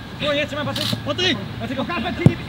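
Several men's voices calling out and talking over one another, the words unclear: footballers and coaches shouting during a training drill.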